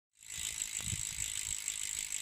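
Bicycle freewheel ratchet buzzing: the fast, even clicking of a wheel spinning freely, fading in just after the start.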